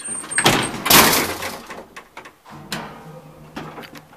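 The collapsible steel scissor gate of a 1936 ASEA elevator car is slid and latched shut with a loud metallic clatter, followed by a few clicks. About two and a half seconds in a steady low hum begins, the elevator's drive starting up.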